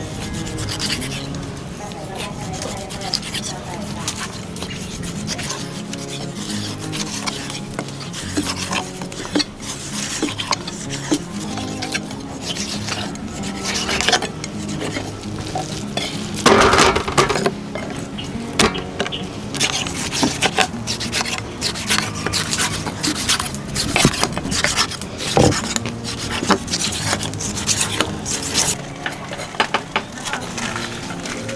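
Kitchen knives slicing snakehead fish fillets on wooden stump chopping blocks: irregular knocks and scrapes of the blades against the wood, with one louder burst of noise about halfway through.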